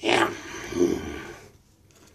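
A man's loud wordless vocal noise, starting suddenly with a second swell just under a second in and dying away by halfway.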